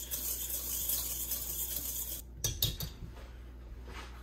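Wire whisk stirring dry sugar and pectin in a metal mixing bowl: a steady gritty scraping that stops about two seconds in, followed by a few light knocks.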